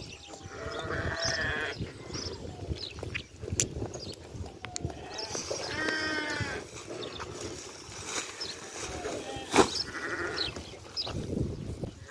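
Sheep bleating in the pen, a few calls with the longest about six seconds in, over short crackles and rustles of a plastic sack and fleece being handled.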